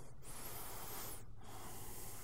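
A faint breath close to the microphone over low, steady room tone.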